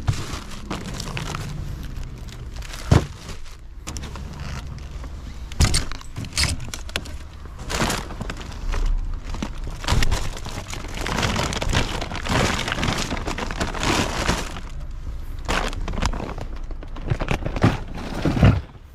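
Shopping being loaded into a car boot: plastic shopping bags rustling and packs and bottles knocking down onto the boot floor. Several sharp knocks stand out, with a longer stretch of rustling a little past the middle.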